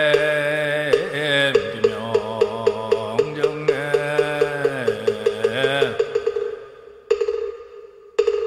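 A monk's chanting voice in long held notes over a moktak (wooden fish) struck in a steady beat of about four strokes a second. The voice stops about six seconds in, and near the end two louder strokes ring out at the same pitch.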